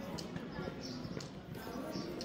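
Footsteps on stone paving, a sharp click about every half second, over indistinct chatter of people talking.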